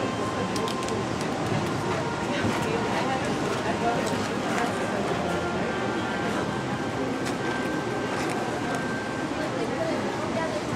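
Steady hubbub of indistinct voices in an indoor arena, with no words standing out, and a few faint knocks.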